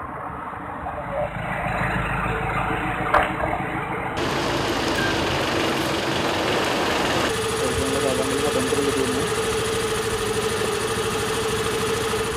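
Vehicle engines idling and running close by on a street, with people talking over them; the sound changes abruptly twice, about four and about seven seconds in, and a steady low hum runs through the last part.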